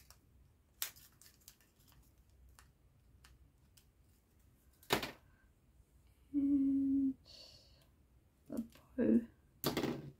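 Scattered light clicks and taps of card-making supplies and a tool being handled on a tabletop, with a louder click about five seconds in and another at the very end. A short steady hummed note comes in between, followed by a brief murmur.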